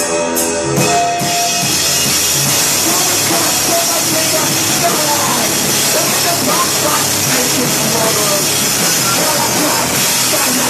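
Live screamo/blackgaze band playing: a few cymbal hits over ringing guitar chords, then about a second in the full band crashes in with drum kit and distorted guitars, loud and dense.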